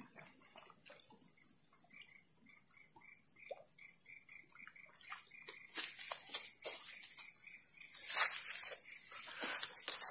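Swamp ambience: a steady high-pitched insect whine and, in the middle, a run of short repeated chirps. Near the end come rustling and splashing as a small fish is pulled from the water on the rod.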